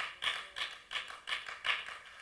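Short sharp percussive taps in a steady rhythm, about three a second.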